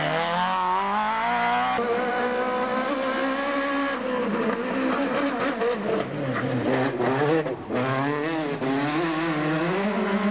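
Two-litre kit-car rally engines revving hard as the cars pass on gravel stages. The pitch climbs, holds and rises and falls again through gear changes and lifts, with a brief drop about seven and a half seconds in.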